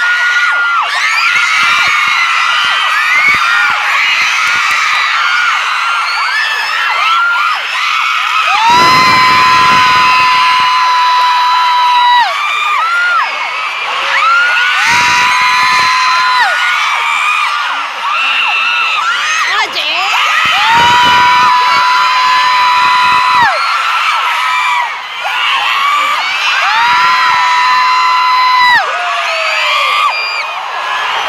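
Large concert crowd screaming and cheering continuously. Four long, high-pitched screams are held steady close by, each for two to three seconds.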